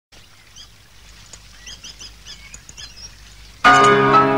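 Faint bird chirps, a scattering of short high calls, then about three and a half seconds in a grand piano comes in suddenly and loudly with full, ringing chords.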